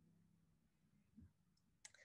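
Near silence, with one faint short click near the end, a computer click advancing the presentation slide.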